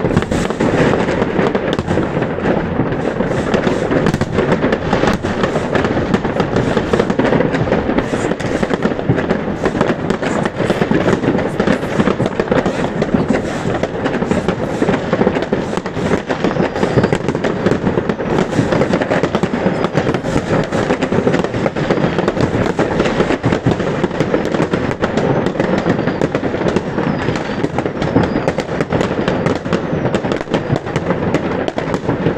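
Many fireworks going off at once: a dense, unbroken crackle of bangs and pops that keeps going without a pause.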